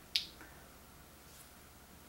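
Quiet room tone with a single short, sharp click near the start.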